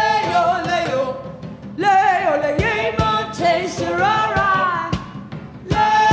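Live rock band performance: a woman singing long, bending phrases over the band, with sharp drum hits between the lines.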